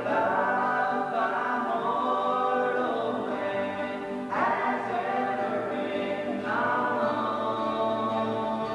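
A small gospel group singing a song together in several-part harmony, men's and a woman's voices, accompanied by acoustic guitars.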